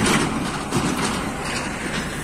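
Tractor engine running steadily as it tows a trailer through the field stubble.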